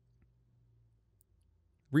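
Near silence: room tone with a faint low hum that fades out about a second in, and a few faint clicks.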